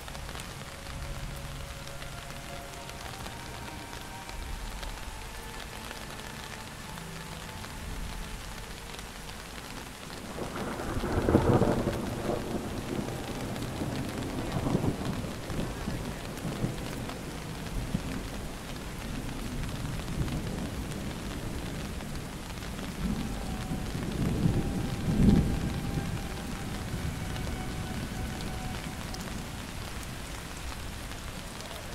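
Thunderstorm: steady rain falling throughout, with two rolls of thunder. The first breaks about ten seconds in, sharply at first and then rumbling for several seconds. The second builds to a peak about twenty-five seconds in.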